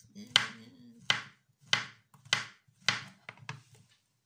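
Kitchen knife slicing a peeled banana on a cutting board: about seven sharp taps of the blade hitting the board, roughly one every half second, stopping near the end.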